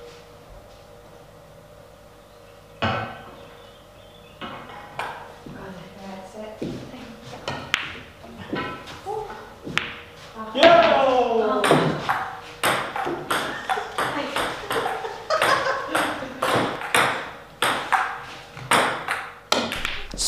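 Pool balls clacking on a pool table, with a sharp knock about three seconds in and more knocks later on. From about halfway, indistinct voices in the room become the loudest sound.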